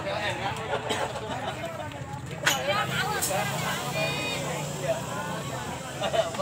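Indistinct chatter of people around the pits over a low steady hum, with a couple of sharp clicks about halfway through; the electric drag bike on the track is not heard.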